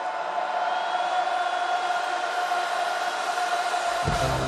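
Arena concert crowd cheering, with a steady held tone sustained over the noise and little bass. Deep bass comes in right at the end.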